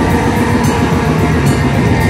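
Black metal band playing live through a PA: dense, sustained distorted electric guitar with a few faint cymbal crashes.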